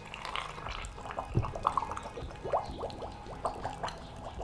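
Oil poured from a large plastic container into a glass jar of dried calendula flowers: a steady glugging pour with many short rising bloops as the jar fills.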